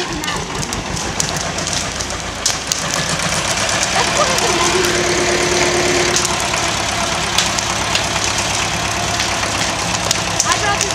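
A small bulldozer's engine running steadily, a little louder from about two seconds in, with the sharp crackle of a burning wooden outhouse over it.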